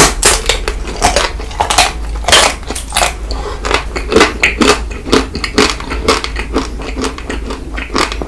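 Close-miked biting and chewing of a coated ice cream bar: the hard shell cracks into many sharp, irregular crackles, mixed with wet mouth sounds.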